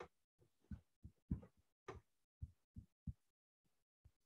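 Near silence, broken by about seven faint, short, low thumps at uneven intervals.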